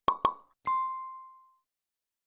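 Logo-animation sound effects: two quick pops, then a single bright ding that rings out for about a second and fades away.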